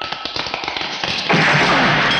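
Film fight sound effects: a fast run of sharp taps and clicks, then about a second and a half in a sudden, loud, noisy hit with a low thud under it, as a handcuffed man is struck to the floor.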